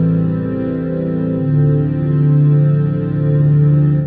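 Synthesizer chords run through the MVocoder plugin with its freeze function engaged, held on one frozen vowel sound as a steady sustained chord. The chord changes about a second and a half in.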